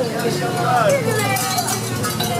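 Several people talking, with a motorcycle engine running low and steady underneath as the bike rolls up close.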